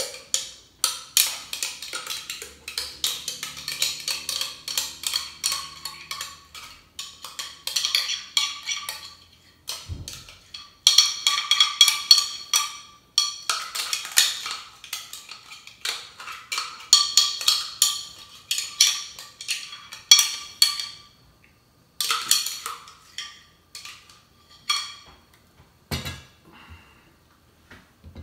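Metal spoon scraping and knocking against the inside of a glass blender jar while scooping out thick guacamole. Quick runs of sharp, ringing clinks are broken by short pauses, with a duller knock about ten seconds in.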